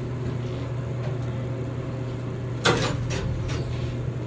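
Elevator car doors opening with one sharp clunk about two-thirds of the way in, over a steady low hum in the car. The car doors open but the landing door behind them stays shut, the sign of an elevator stuck and not working.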